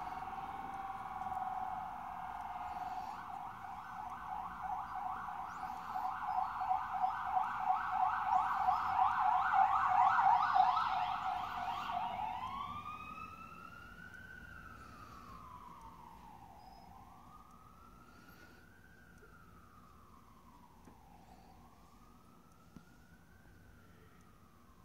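A distant siren runs a fast warbling yelp that grows louder. About twelve seconds in it switches to a slow rising-and-falling wail and fades away.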